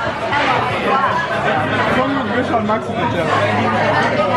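Babble of many people talking at once in a packed restaurant dining room: overlapping voices run on without a break.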